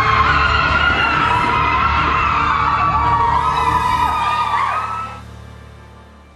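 A group of young women screaming and cheering together in celebration of a win, high overlapping shrieks that fade away about five seconds in, over background music.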